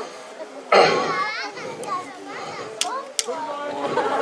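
High-pitched children's voices shouting and chattering, starting about a second in, with two short sharp clicks near the end.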